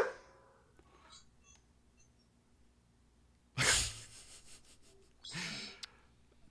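Near silence broken about three and a half seconds in by one short, sharp breathy burst into a microphone, like a hard exhale or sneeze, and a softer breath near the end.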